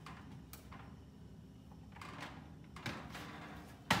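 Metal cookie sheet being slid out of a hot oven over the wire oven rack: a few light clanks and scrapes, then one sharper metallic clank near the end as the sheet comes off the rack.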